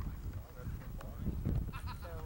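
Low outdoor rumble with a few faint knocks, then a distant voice calling out near the end.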